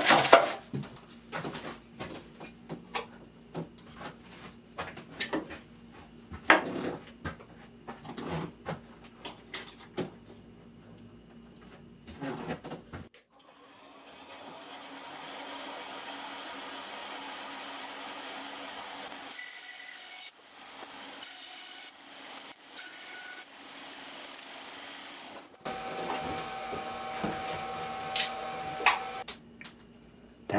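Rustling parchment paper and clicking plastic blocks being handled on a workbench. About halfway through this gives way to a bandsaw running steadily as it cuts through a moulded block of HDPE plastic, with a brief dip in its sound partway through. Near the end there is a steadier hum with a few clicks.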